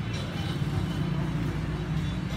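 Steady low rumble of street and traffic ambience.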